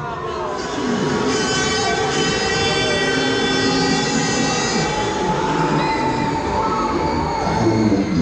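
A long horn-like tone with many overtones, held for about four seconds and then fading, with sliding whistle-like tones under it, played over the loudspeakers of a Huss Break Dance funfair ride amid the ride's steady noise.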